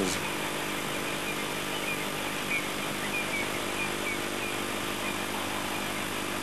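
Game-drive vehicle's engine idling steadily, a low even hum. Faint short high chirps repeat over it.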